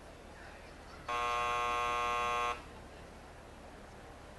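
An electronic buzzer sounds one steady, buzzing tone for about a second and a half, starting about a second in, over faint room noise.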